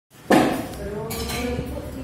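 A sudden clatter of dishes and tableware about a quarter second in, followed by a few lighter clinks, with voices talking in the room.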